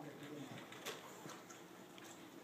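A man's voice trails off at the end of a word, falling in pitch, followed by quiet room tone with a couple of faint clicks.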